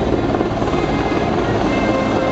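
Super Puma twin-turbine helicopter flying low and close: a loud, steady rumble from its rotor and engines.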